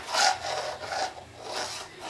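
A plastic cup pushed and scraped across a hardwood floor in several short rubbing strokes.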